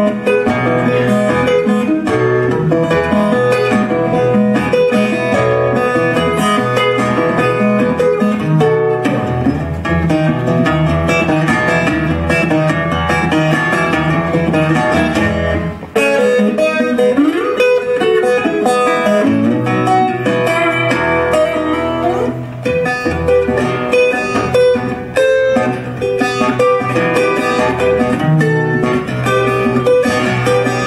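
Twelve-string acoustic guitar fingerpicked in a fast, busy solo instrumental. About halfway through the playing briefly drops away, then returns with several notes sliding up and down in pitch.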